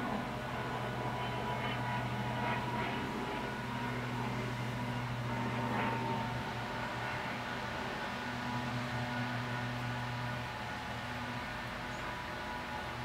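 A steady low hum under a faint hiss, with a few soft scratches of a paintbrush on canvas in the first half; the hum eases slightly near the end.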